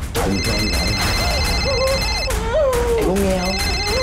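Telephone ringing in a repeating electronic trill, in bursts of about two seconds separated by a gap of about a second. Under it, a muffled voice whimpers with a wavering, gliding pitch.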